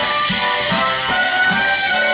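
Live folk band, including a fiddle, playing a Morris dance tune with a steady beat of about two and a half a second, under the jingle of the dancers' leg bells.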